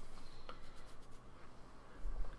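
Quiet room noise with a low hum and a few faint, soft clicks and rubbing sounds, the clearest click about half a second in.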